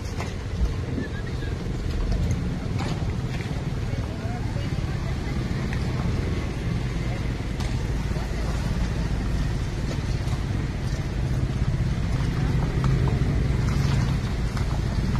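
Street sound: indistinct voices of passers-by over the steady low sound of traffic, cars and a motorcycle among them, with a few small knocks.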